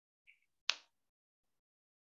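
A faint short tick, then a single sharp click a moment later.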